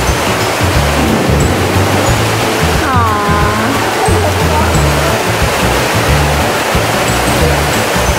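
Steady rushing water, like an exhibit waterfall, under background music with a shifting bass line. A short falling cry is heard about three seconds in.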